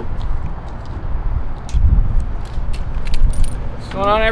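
Uneven low rumble with scattered light metallic clicks and jingles, a few per second.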